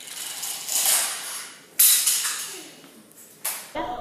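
Small 3D-printed plastic cart rattling as it runs down a toy roller coaster track built from thin sticks. The clatter builds over the first two seconds and then comes in a sudden louder burst that fades, with a shorter one near the end.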